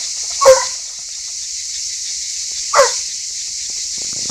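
A scent hound bays twice, about two seconds apart, each a short call falling in pitch: a hound giving tongue as the pack works the line during the rapproché.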